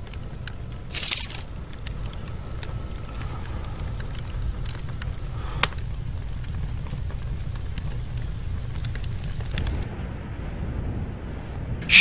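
Small metal coins clinking together in a hand once, briefly, about a second in, followed by a low steady hum with a few faint ticks.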